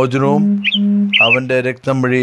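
A man's voice reading aloud in Malayalam, with a held, steady-pitched syllable in the first second and two short high chirps about halfway through.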